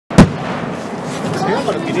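A single loud boom of an aerial firework shell bursting just after the start, followed by a steady background of spectators' voices.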